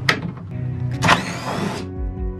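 DeWalt cordless impact driver running for just under a second, starting about a second in, its motor whine rising as it backs a screw out of a wooden batten. Background music plays throughout.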